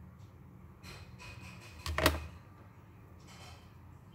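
Quiet handling noises of small craft work, with one short, sharp click or knock about halfway through.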